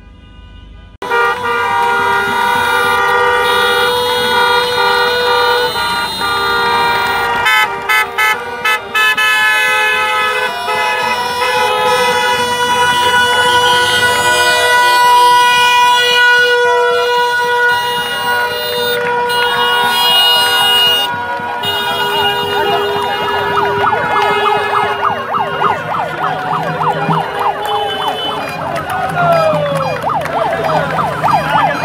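Many car horns honking at once in long overlapping blasts as a convoy of cars drives past, starting suddenly about a second in. Near the end, wavering siren-like tones join in.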